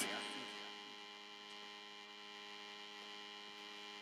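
Faint, steady electrical mains hum: a stack of unchanging, evenly spaced tones over a light hiss.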